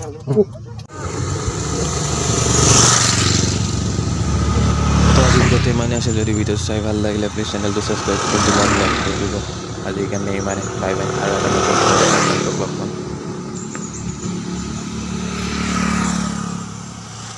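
Road traffic passing by one vehicle after another: a car and motorcycles, each pass a swell of tyre and engine noise that rises and fades over a few seconds.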